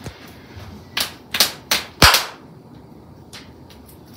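Body-percussion beat of sharp hand claps and slaps: four quick strikes in about a second, the last the loudest, then two faint taps.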